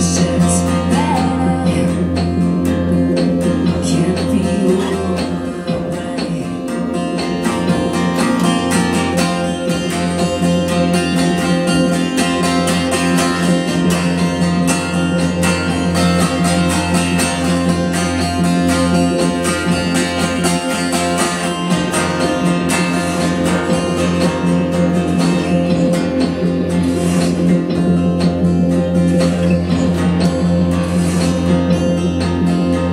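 Live folk song: acoustic guitar strummed steadily over a sustained low drone.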